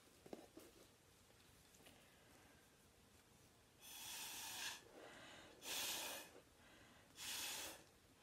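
A person blowing hard through a drinking straw onto wet acrylic paint, three breathy puffs from about four seconds in, each under a second long.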